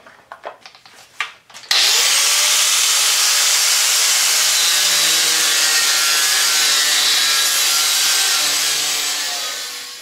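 Handheld angle grinder cutting through mild steel clamped in a vise. After a few light knocks, it starts up about two seconds in with a brief rising whine, then runs loud and steady with a high-pitched cutting noise, tailing off near the end.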